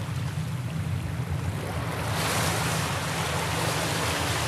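Ocean surf washing up a sandy beach, with wind rumbling on the microphone; the wash swells louder about halfway through.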